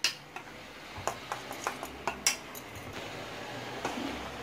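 Spoon clinking and scraping against a stainless steel bowl of melted chocolate: a series of irregular sharp clinks, the loudest about two seconds in.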